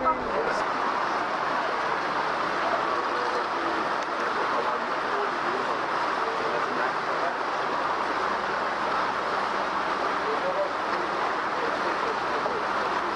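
Steady noise of an open canal tour boat under way, with a faint murmur of indistinct passenger voices.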